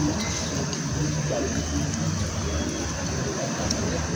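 Dining-area background noise: a steady low rumble with faint, indistinct voices and a few light clicks.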